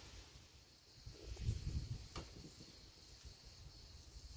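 Faint, steady high-pitched chirring of crickets, with a few soft low knocks and one sharp click a little past two seconds in.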